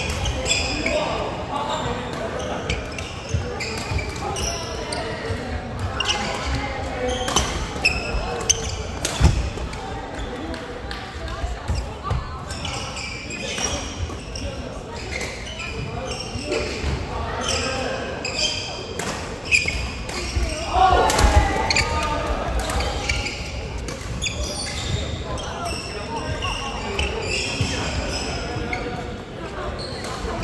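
Badminton play in a large hall: rackets hitting a shuttlecock and shoes thudding on the wooden court floor, as repeated short sharp knocks. Voices from people around the hall run underneath, and the hall gives everything an echo.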